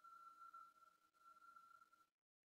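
Near silence, with only a faint steady high-pitched tone in the recording's background.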